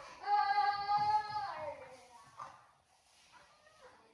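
A toddler's voice singing out one long held note for about a second and a half, dropping in pitch at the end. A few short, quieter vocal sounds follow.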